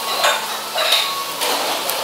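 Busy Chinese-restaurant din: a steady frying sizzle from the kitchen. Over it come a few soft crunching bursts of chewing, picked up close on a clip-on mic.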